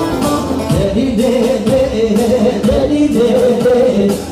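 Live Kurdish wedding music: a singer over an amplified band with a steady beat, playing loudly for dancing.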